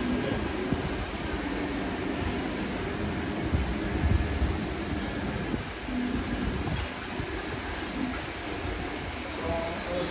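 Electric hair clippers buzzing steadily as they are worked over the back of the neck and head during a cleanup, with a low continuous rumble underneath.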